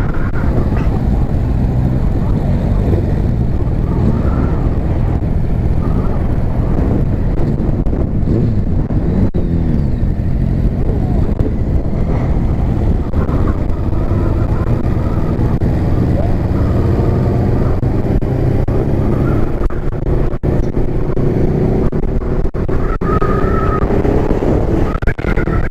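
Motorcycle engine running under way, mixed with heavy wind noise on an on-bike camera microphone; the engine note rises and falls at times with the throttle.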